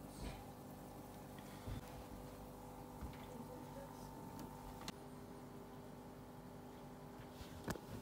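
Aquarium filter and air pump running with a faint, steady hum. A few light clicks sound over it, the loudest near the end.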